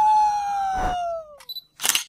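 A man's long, loud held "ahhh" yell on one high note, which slides down in pitch and fades out about one and a half seconds in. A brief knock sounds partway through, and a short burst of noise comes near the end.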